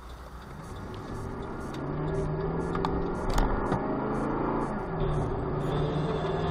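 Car engine and road noise inside a moving car, the engine's pitch rising and falling as it pulls.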